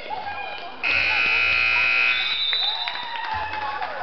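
Gym scoreboard buzzer sounding once for just over a second as the game clock hits zero, marking the end of the game, followed by voices from the crowd.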